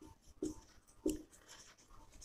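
Marker pen writing on a whiteboard: short, faint scratching strokes, the clearest about half a second and a second in.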